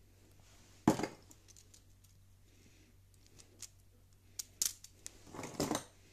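Plastic Lego Technic parts being handled: one sharp clack about a second in, a few light clicks, then a short rattling clatter near the end as the assembly lands on a pile of loose Lego pieces.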